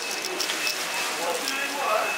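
Fast-food restaurant background noise: a steady crackling hiss with light clatter, a thin steady high-pitched tone, and faint voices.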